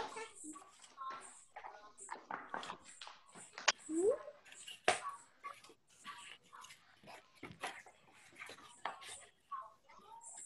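Faint, indistinct voices in short fragments, with scattered clicks and handling noises; two sharp clicks stand out a little under four seconds in and near five seconds.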